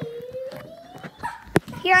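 A child's drawn-out vocal cry, one long sound rising in pitch, followed about a second and a half in by a single sharp knock.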